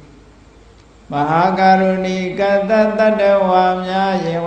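Buddhist chanting of Pali verses, one voice reciting in long, evenly held notes. It begins about a second in, after a short pause.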